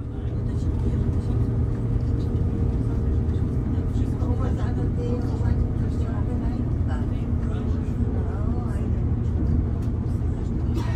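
Inside a Class 220 Voyager diesel multiple unit at speed: a steady low rumble from its underfloor diesel engines and wheels on the track. Faint voices are heard in the carriage now and then.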